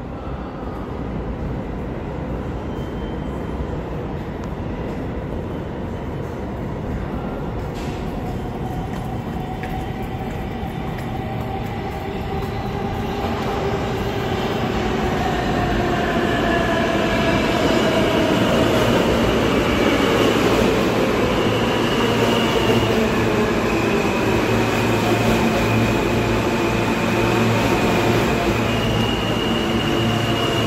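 An R160 New York City subway train approaches through the tunnel and pulls into the station, its rumble growing louder through the second half. From about halfway, its pitched motor whine glides downward as it slows, with steady high tones coming in near the end.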